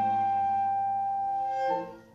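Live chamber ensemble holding a long sustained chord, with a brief change of notes just before the music stops suddenly near the end.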